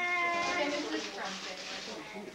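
A person's high voice drawing out a long, slightly falling cry like an "aww" for about a second, then quieter chatter.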